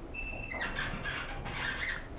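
Elevator car squeaking as it rises: a high, steady squeal for about half a second at the start, then fainter, wavering squeaks. The rider guesses the squeak comes from wind getting into the elevator.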